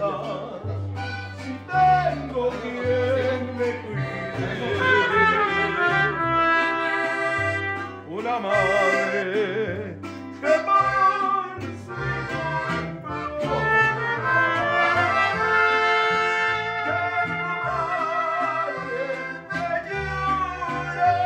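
A live band playing a tune: accordion and brass carrying the melody over a bass line that steps between low notes about once a second.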